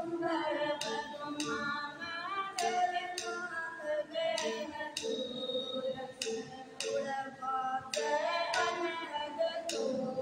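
Group of women singing a devotional shabd together, over a steady dholak drum beat and regular hand claps about once a second.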